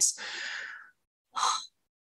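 A woman's breathy exhale, like a sigh, lasting just under a second, then a short breath about one and a half seconds in, as she pauses to think between sentences.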